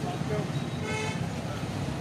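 Roadside traffic rumble with voices in the background, and a short vehicle horn toot about a second in.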